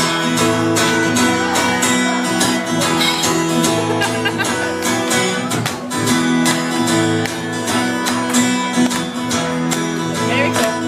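Acoustic guitar strummed in a steady rhythm, with the chords changing a few times: the instrumental opening of a song played live, before the singing comes in.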